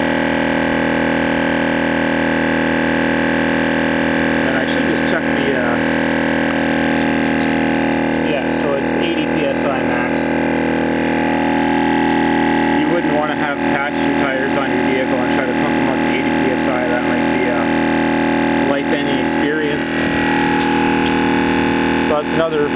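MotoMaster twin-cylinder 12-volt tire inflator running steadily as it pumps up a light-truck tire, with indistinct talking over it at times.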